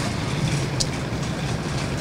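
Steady outdoor street noise with a low rumble, and one short sharp click about a second in.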